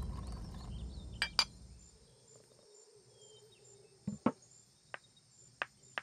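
Porcelain tableware clinking: two sharp clinks a little over a second in, then a few softer clicks spread through the rest. A low music bed fades out over the first two seconds.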